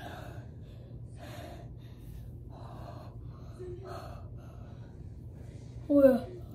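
A girl breathing hard in a run of short, gasping breaths, out of breath from a set of sit-ups.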